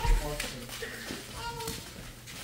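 Faint voices of people murmuring in a small room, with a few soft rustles.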